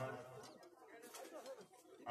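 A man's voice at the start, then quieter, low wavering voice-like sounds.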